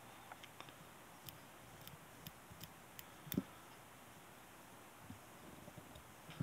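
Faint, scattered clicks of small fly-tying scissors snipping hackle fibres off the top of a fly in the vise, with one slightly louder knock about three seconds in.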